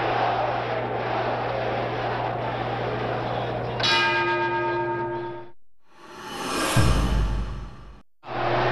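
Arena crowd noise over a steady low hum, then a boxing ring bell rings out about four seconds in, holding for a second and a half to end the round. The sound then fades, and a short noisy swell with a low rumble comes just before a sudden cut.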